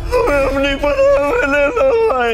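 A wailing voice whose pitch breaks sharply up and down in quick steps, like a keening cry or a yodel-like lament.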